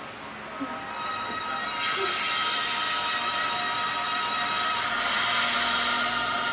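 Logo sound for an animated video-label ident: a sustained chord of steady tones swells up from about a second in and then holds.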